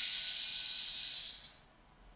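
Cordless screwdriver turning an M3 tap to cut threads into a 3D-printed plastic part: a steady, high hissing whir that fades out about a second and a half in.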